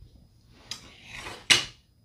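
Handling noise on a tabletop: a light click, a short sliding rub, then a sharp knock about one and a half seconds in.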